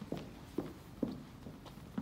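Footsteps on a stage floor: a steady walk of about two steps a second, each step a dull thump.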